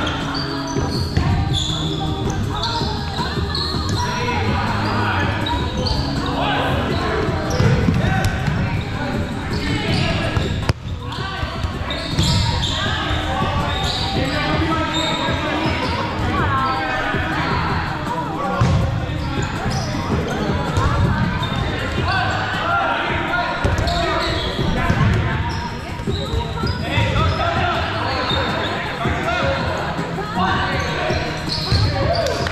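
Foam dodgeball game in a gymnasium: players shouting and calling over repeated thuds of balls striking the hardwood floor, walls and players, echoing in the large hall.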